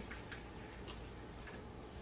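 Quiet room tone with a few faint, soft ticks at uneven spacing.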